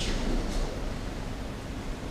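Rustling of cotton training uniforms and movement on tatami mats during an aikido throw, the partner being taken down to the mat, with a brief burst of rustle at the start and another about half a second in.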